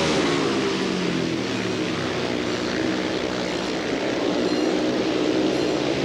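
Speedway motorcycles' 500cc single-cylinder methanol engines running hard on the track, a steady engine drone whose pitch wavers slightly.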